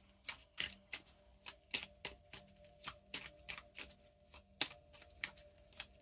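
Cards from an oracle deck being shuffled by hand: a run of soft, crisp clicks and snaps at an uneven rate of about three or four a second.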